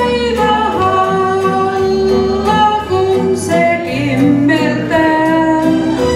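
A woman singing karaoke into a handheld microphone over a recorded backing track, holding long notes of about a second each.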